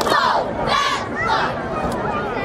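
Football crowd in the stands shouting, many voices overlapping at once.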